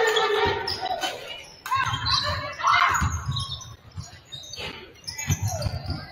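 Several basketballs bouncing on a hardwood gym floor, in irregular overlapping thuds that echo in the large hall.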